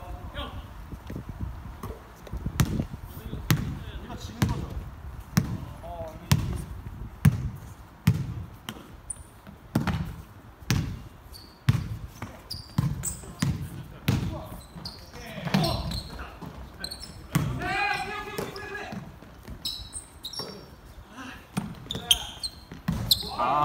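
A basketball being dribbled on a wooden gym floor, a run of thuds about once a second that ring in the large hall. A player shouts about three-quarters of the way through.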